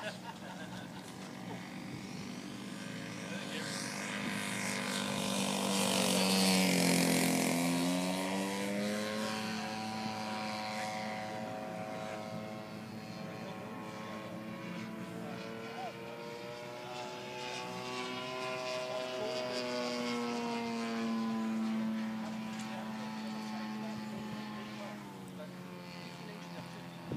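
Gasoline-engined radio-control Pitts Special model aircraft flying, its engine and propeller note rising and falling as it manoeuvres. It is loudest about seven seconds in, where the pitch drops as it passes by, and swells again later on another pass.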